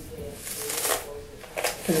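Tangle Teezer detangling brush pulled through thick, conditioner-coated coily hair: a soft rasping swish of the plastic teeth, strongest in the first second.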